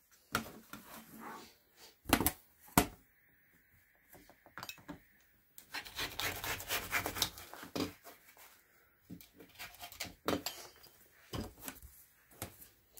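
Rotary cutter rolling through folded lining fabric along an acrylic quilting ruler on a cutting mat, in several short cutting strokes with pauses between them, and a few sharp knocks as the ruler and fabric are handled.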